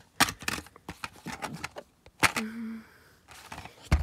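Plastic DVD case being handled: a quick run of clicks and clatter in the first two seconds, a sharper click a little past halfway, and a louder snap at the end as the case is opened.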